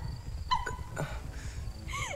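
A woman crying, with short whimpering sobs, the clearest about halfway through.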